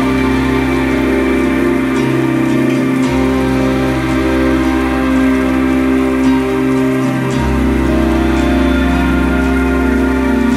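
Steady rain pattering, mixed with slow, soft background music: sustained chords over a low bass note that changes about three seconds in and again past seven seconds.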